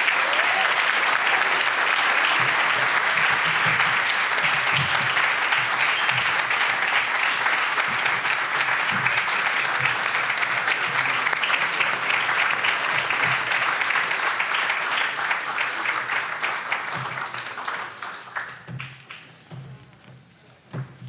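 Large audience applauding steadily after a speech, dying away over the last few seconds.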